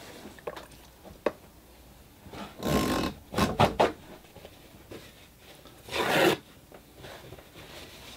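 Off-camera handling noise: a light click, then a few short rasping, rubbing strokes, the loudest about three seconds in and another about six seconds in.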